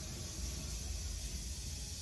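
Room tone: a steady low hum under an even hiss, with no distinct sounds.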